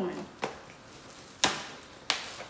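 Two sharp cracks about a second apart from a frozen-solid, ice-stiffened T-shirt being handled and forced open by hand.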